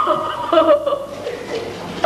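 A woman wailing in grief, crying out a name in long, drawn-out, breaking cries.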